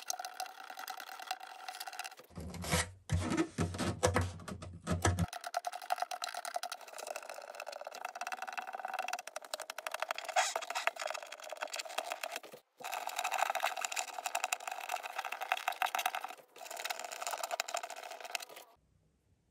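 Fingertips rubbing and rolling old pickguard adhesive off an acoustic guitar's top: a dense, scratchy rubbing made of many tiny irregular ticks, broken by a couple of brief cuts.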